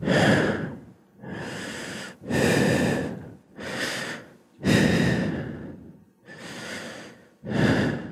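A person breathing slowly and deeply in and out, close to the microphone, about seven full breaths one after another with short pauses between them.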